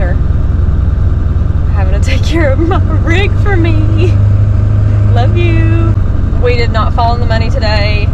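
Steady low drone of a pickup truck's engine and road noise inside the cab while driving, with a woman talking over it from about two seconds in.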